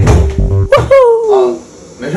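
Background music with a voice over it, including one long falling vocal glide about a second in; the sound drops much lower about one and a half seconds in.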